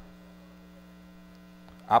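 Steady low electrical mains hum, a constant tone, in the sound feed of the lectern microphone; a man's voice starts again near the end.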